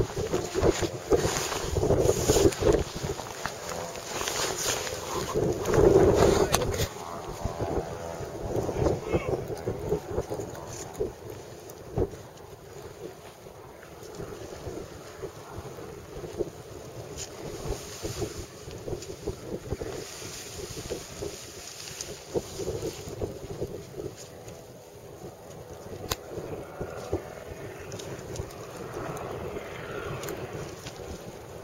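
Wind buffeting the camera microphone. It is loud and gusty with handling knocks for the first seven seconds or so, then settles to a lower, steady rush with occasional clicks.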